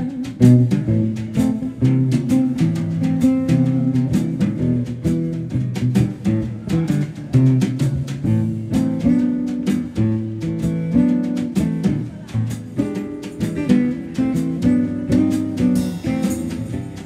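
Live band instrumental passage: a classical guitar plays changing notes and chords over a drum kit keeping time with frequent drum and cymbal hits.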